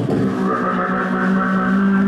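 Beatboxer holding one long, steady-pitched vocal tone into a handheld microphone, amplified through a stage PA, after the percussive beats stop about a third of a second in.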